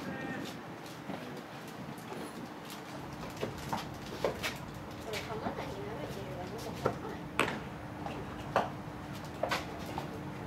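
Indistinct voices of players calling out across a baseball field, with about six sharp knocks scattered through the second half and a faint steady hum.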